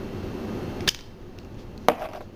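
Hands handling a plastic syringe and a medicine vial: a low rustle, then two sharp clicks about a second apart as the syringe is worked free of the vial.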